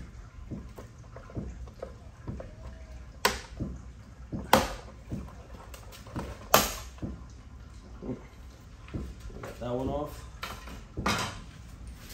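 Sharp plastic clicks and snaps from a flathead screwdriver prying at the plastic trim on a car's side mirror, a handful of separate clicks a second or two apart, the loudest about four and a half and six and a half seconds in.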